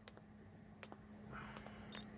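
Quiet room tone with a steady low electrical hum and a few faint clicks, then a short high-pitched electronic beep near the end.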